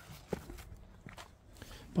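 Footsteps on loose gravel: a few faint, scattered steps, the clearest about a third of a second in.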